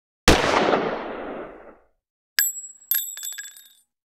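A single pistol shot sound effect with a long echoing decay. About two seconds later come several quick metallic clinks with a bright ringing tone, a spent shell casing dropping and bouncing.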